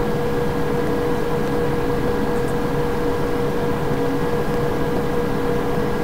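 Steady droning hum and hiss with one constant tone, unchanging throughout.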